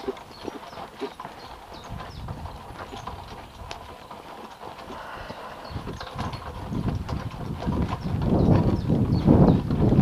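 Horse's hoofbeats on a sandy dirt track, heard from the cart it is pulling. A low rushing noise, wind on the microphone, builds up and grows much louder over the last few seconds.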